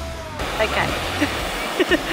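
Background rock music stops shortly in. After it comes a steady rush of wind on the microphone and breaking surf at a beach, with short snatches of voices.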